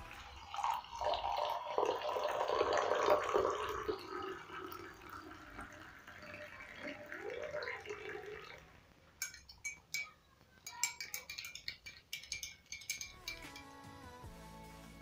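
Hot black coffee poured in a stream into a ceramic mug, the pour stopping about eight and a half seconds in. Then a metal spoon stirs it, clinking repeatedly against the inside of the mug.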